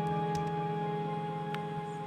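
Background music from a Nintendo game: a soft held chord of several sustained notes, easing slightly toward the end.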